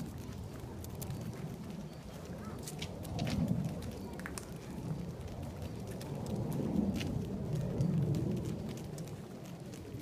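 Walking noise on a paved path: footsteps and scattered light ticks over a low rumbling noise that swells twice, about three seconds in and again around seven to eight seconds.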